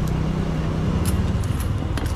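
Steady low rumble of a road vehicle's engine in nearby street traffic, with a few light metallic clinks of a cooking utensil.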